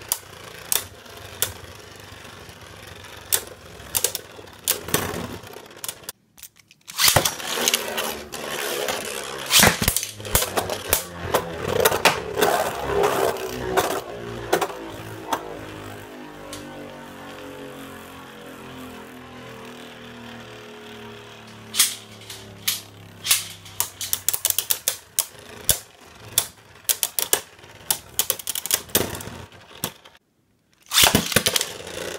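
Two Beyblade Burst tops spinning and clashing in a plastic Takara Tomy B-09 stadium: sharp clicks and knocks as they hit each other and the wall. The sound drops out briefly about six seconds in, then comes a dense flurry of hits. A falling hum follows as a top slows. A cluster of hits near the end ends with Bloody Longinus bursting apart.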